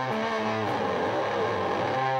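Live band music led by a distorted electric guitar holding and bending sustained notes, over a bass line that changes note about every half second.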